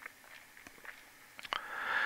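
A pause in a quiet room with a few faint clicks, then a soft drawn breath starting about one and a half seconds in, just before speaking resumes.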